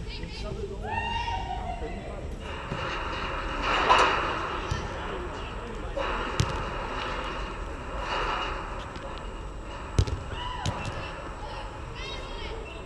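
Volleyball players shouting and calling to each other during play on a sand court, with several sharp slaps of hands hitting the ball, the loudest about four and ten seconds in.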